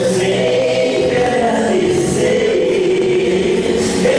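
Two men singing a gospel song together into handheld microphones, their voices amplified and steady throughout.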